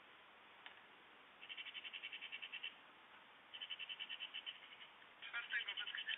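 An animal's rapid rattling call, about ten pulses a second, given three times in bursts of about a second. The last burst, near the end, is louder and more varied, with gliding notes.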